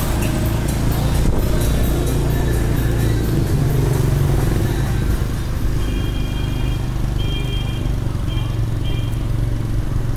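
Motorbike engine running steadily while riding along a city street, with traffic and road noise.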